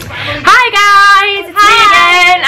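Women's voices singing out long held notes with a wavering vibrato, one note and then a second after a short break.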